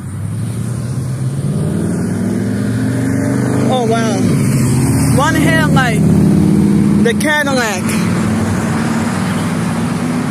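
Road traffic at an intersection: car engines running as vehicles pass close by, the sound building over the first couple of seconds and holding steady.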